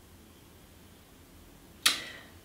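Quiet room tone, then a single short, sharp swish near the end.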